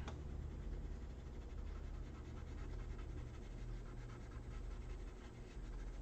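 Colored pencil scratching softly across paper as a drawing is shaded, over a low steady hum.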